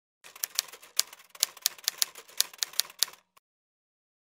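Typewriter keys clacking in an irregular run of sharp strikes, a few a second, stopping a little after three seconds with one last faint click.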